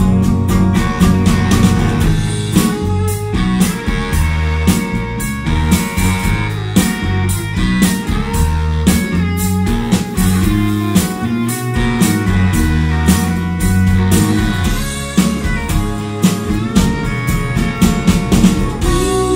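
Live rock band playing an instrumental passage: electric guitars over bass and a drum kit keeping a steady beat.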